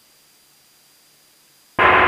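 Faint steady hiss of a cockpit intercom or headset audio feed with a thin high tone, no engine sound heard. Near the end an air traffic control radio transmission cuts in abruptly and loudly with a word of speech.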